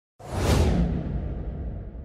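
Whoosh sound effect of a logo intro sting. It starts suddenly about a fifth of a second in, its hiss peaking at once and then fading away, over a low rumble that carries on.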